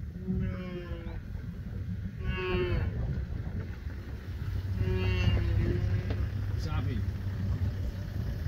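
Wildebeest herd calling: three drawn-out lowing calls, about half a second, two and a half seconds and five seconds in, with a fainter one near seven seconds, over a steady low rumble.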